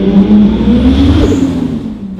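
Toyota 2JZ-GTE turbocharged inline-six, swapped into a BMW Z4 coupe with a custom exhaust, accelerating and heard from inside the cabin. The engine note rises for about a second, then fades as the driver eases off.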